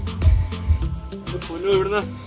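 Insects chirring in a steady high-pitched tone, over a low rumble of wind on the microphone.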